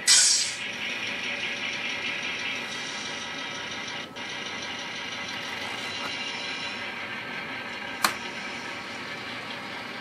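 An N-scale model diesel locomotive runs steadily as it pulls away from its uncoupled cars, opening with a short hiss. A single sharp click comes about eight seconds in.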